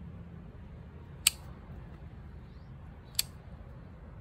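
Pruning scissors snipping small branches off a bonsai tree: two sharp snips, about a second in and again about two seconds later, over a low steady background hum.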